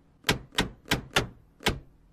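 A rubber stamp struck down onto paper on a desk five times in quick succession, stamping approval, with a slightly longer gap before the last strike.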